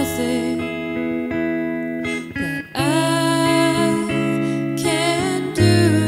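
Electric guitar playing slow, sustained chords, with a solo voice singing long held notes over it from about halfway through.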